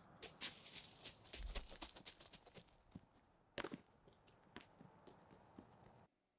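Footsteps crunching on dry leaves: an irregular run of quiet crackles and taps, busier in the first couple of seconds and thinning out toward the end.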